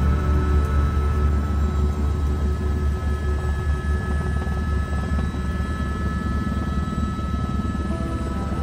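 Helicopter cabin noise in flight: a loud steady low drone from the rotor and engine, with a fast pulsing beat and a thin steady whine. Soft background music runs underneath.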